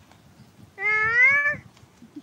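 One loud, drawn-out animal call, starting under a second in and lasting less than a second, rising slightly in pitch.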